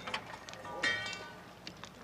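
Steel shovel and pitchfork scooping heated rocks out of a fire pit: scattered clicks and knocks of stone and steel, with a brief ringing metal scrape about a second in.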